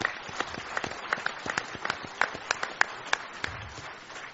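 Audience applauding, a run of sharp claps with single claps standing out.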